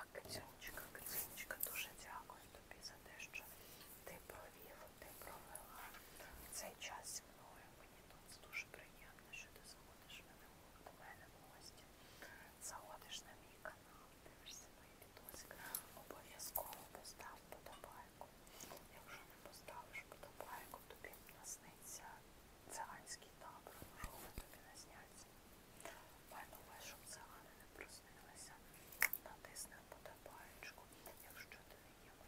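A woman whispering quietly.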